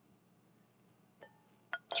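Faint room tone, then about a second in a single light clink of a wine glass, with a short ring after it.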